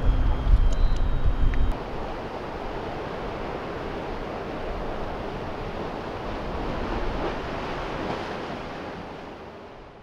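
Wind buffeting the microphone under the last words of speech, then a steady wash of surf and wind at the shore, fading out near the end.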